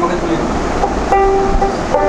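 A man singing a Bhawaiya folk song in held, wavering notes, with a dotara, the long-necked plucked folk lute of north Bengal, accompanying. A steady low rumble runs underneath.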